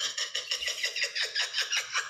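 A woman laughing in a fast, high-pitched run of bursts, about seven a second.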